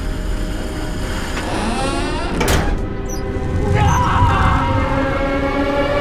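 Horror-trailer sound design: a sustained ominous drone of layered steady tones with a sharp swishing hit about two and a half seconds in. Metallic scraping and screeching of a heavy metal door being worked rises around the middle.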